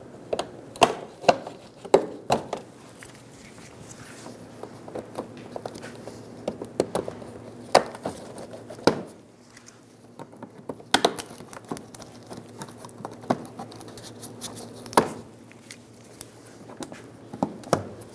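Plastic push-pin retainer clips on a car's bumper underside and wheel-well liner being pried out with clip removal pliers: scattered, irregular sharp clicks and snaps of plastic and pliers.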